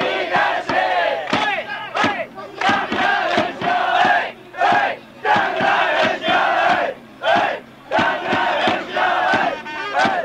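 A crowd of Chiba Lotte Marines fans chanting a cheering song in unison, phrase by phrase with short breaks, over a beat of sharp hits.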